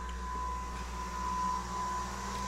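A kitchen appliance running with a steady electric hum and a thin high whine.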